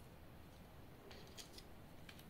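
Near silence with a few faint light clicks and rubs, clustered a little past the middle: small plastic motor and battery housings and their cables being handled.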